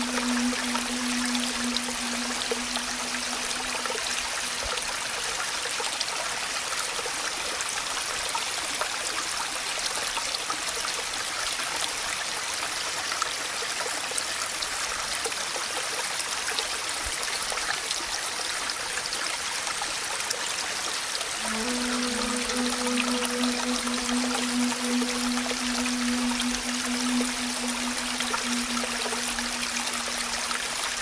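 Steady rain falling, an even hiss throughout. A low held note of background music fades out in the first few seconds and comes back in about two-thirds of the way through.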